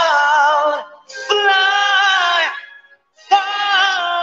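A man belting high sustained notes into a handheld microphone, in three phrases with wavering vibrato, breaking briefly about a second in and again near three seconds before a final long held note.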